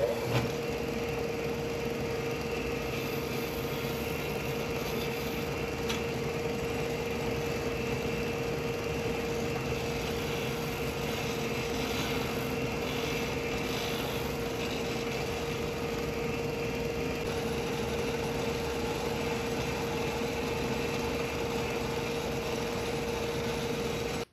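Bench disc sander motor running with a steady hum, squaring the end of a CA-hardened wooden pen blank held in a jig against the sanding disc.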